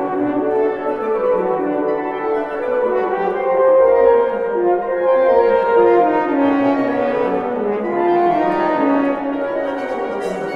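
Wind quartet of flute, clarinet, French horn and bassoon playing a lively contemporary classical piece, several lines moving at once, swelling loudest about four seconds in.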